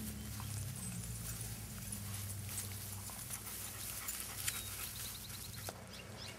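Dachshund puppies growling and grunting low as they wrestle in play.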